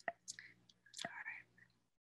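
Faint mouth sounds close to a headset microphone: a few sharp mouth clicks and soft, breathy whispering, the loudest stretch about a second in.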